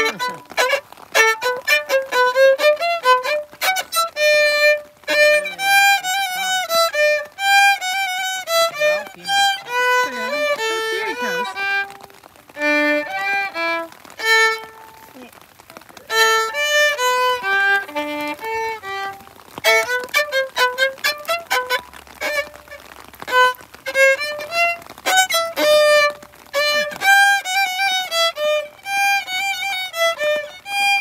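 Solo violin playing a melody of separate bowed notes, with a quieter stretch about halfway through.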